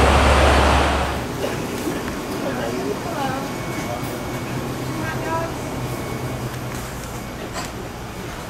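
Diesel truck engines idling with a low, steady drone, cut off suddenly about a second in. Then quieter indoor store background with faint distant voices and a steady electrical hum.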